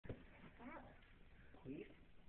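Two faint short bits of voice, about half a second and a second and a half in, with a brief knock at the very start.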